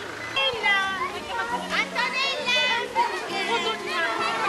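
Children playing, their high voices calling out over one another.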